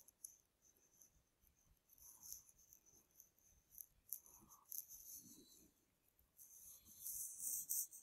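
Near silence: faint room tone with scattered soft, high-pitched ticks and hiss, a little stronger near the end.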